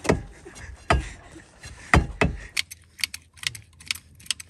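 Four heavy thuds about a second apart, from stones being set and struck at the wheel of an SUV stuck in mud, then, from about halfway, a run of quick light metallic clicks from a hand tool being worked at the wheel.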